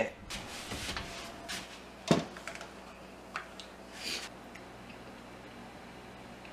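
A foil-lined baking tray of fish fillets being handled, taken from the oven and set on a counter: scattered clicks and foil rustles, with one louder knock about two seconds in.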